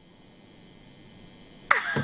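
Faint steady background hiss, then near the end a person suddenly breaks into a laugh.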